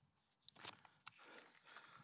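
Near silence, with a faint brief rustle about half a second in.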